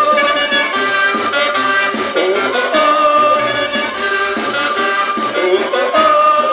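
A live band playing an instrumental passage of a song, heard from within the audience. Sustained melody lines run over a steady rhythm, with no singing.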